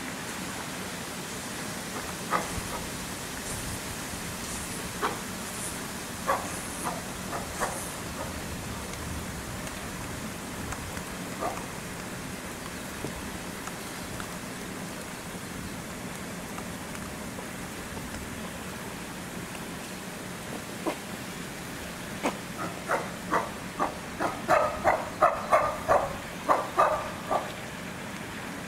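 Steady background hum with a few scattered sharp calls. Near the end comes a quick run of about a dozen loud pulsed calls, about three a second, that build up and tail off: a chimpanzee calling.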